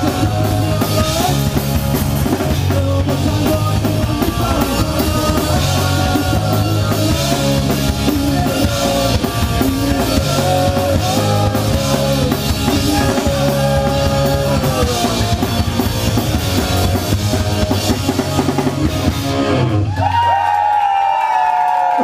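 Live rock band playing an instrumental passage on electric bass, electric guitar and drum kit with a steady beat. Near the end the band stops abruptly, leaving sustained ringing tones that slide downward in pitch.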